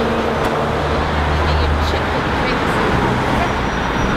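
Road traffic on a busy street: a heavy lorry passing close by with a low, steady engine drone over the general noise of cars and buses, the drone easing off about halfway through.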